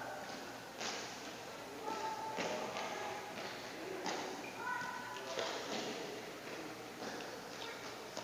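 Quick footsteps and light thuds of players running on an indoor sports court, with distant voices echoing in the large hall.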